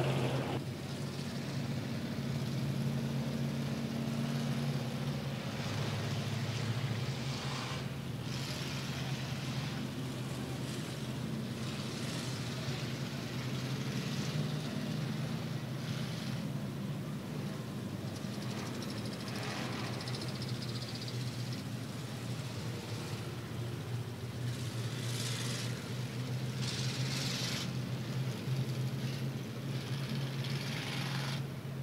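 Race car engines running at low speed under caution, a steady low drone with short louder surges every few seconds as cars pass.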